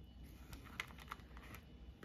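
Faint, scattered light ticks of fingertips tapping and pressing on the clear plastic cover film of a diamond painting canvas.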